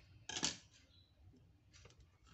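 One sharp clack from a pair of steel scissors about half a second in, followed by a few faint handling clicks.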